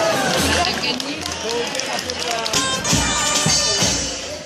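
Dulzaina, the Castilian folk shawm, playing a reedy folk melody with drums beating along, snare and bass drum strikes clearest in the second half, over the voices of a street crowd.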